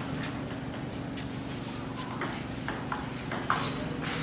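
Table tennis ball hitting paddles and the table during a rally: sharp clicks, a few sparse ones at first, then a quicker run of hits in the second half. A steady low hum sits underneath.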